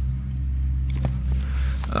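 A steady low-pitched hum, with a few faint clicks about a second in.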